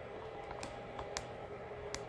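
Keys of a handheld calculator being pressed: a few sharp clicks at irregular intervals.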